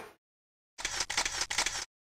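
A short run of several sharp mechanical clicks lasting about a second, set between stretches of dead silence: an inserted editing sound effect.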